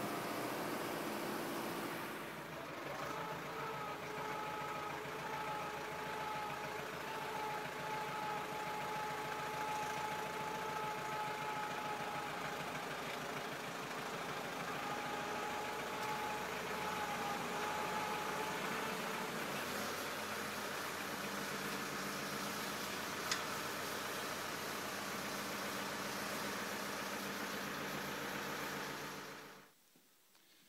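Tractor engine running steadily, heard from the driver's seat, with a steady whine over it through the first half. It stops abruptly about a second before the end.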